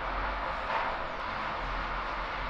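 Steady background noise with a low hum underneath, with no distinct event standing out.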